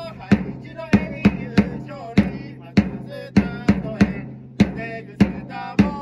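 A cheering squad's drum beats a steady cheer rhythm, about one strong stroke every half second with extra strokes between. Over it runs a pitched cheer melody of the kind chanted or played for a batter.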